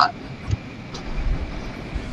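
Uneven low rumble of handling noise on a video-call device's microphone as the device is moved about.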